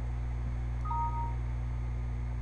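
A short electronic beep, two steady tones sounding together for about half a second, about a second in, over a steady low electrical hum.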